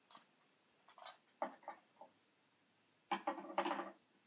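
Small porcelain tea cups knocking and clinking as they are handled and set down on a bamboo tea tray: a few light knocks about a second in, then a louder, quick clatter near the end.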